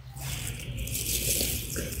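Hiss and crackle with faint, broken-up fragments of a voice: a guest's phone audio breaking up over a poor live-stream connection.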